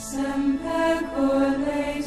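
Background music: voices singing a slow religious chant, with long held notes that step to a new pitch every half second or so and a sung 's' sound near the start and the end.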